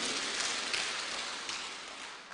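Applause from a small seated audience that fades steadily away.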